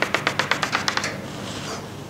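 Chalk tapping against a blackboard in quick dashes, about a dozen taps a second, as a dashed line is drawn; the tapping stops about a second in.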